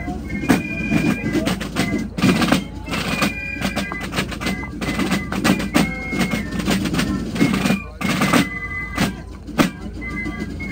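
A Basel Fasnacht clique's rope-tensioned parade drums play a march with rolls as the drummers pass close by, under a high piccolo melody.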